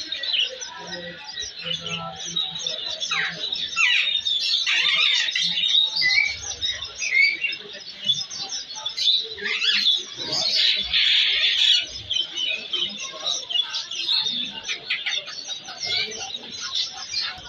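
Many caged budgerigars and parakeets chirping and chattering together in a dense, continuous chorus of high calls and squawks, busiest a little past the middle.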